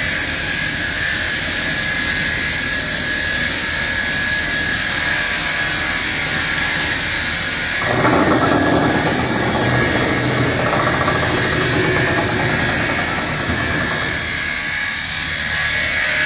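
A wood-cutting multi-blade saw machine and its conveyor motors running with a steady high whine. About eight seconds in, a louder, rougher noise joins for some six seconds before easing off.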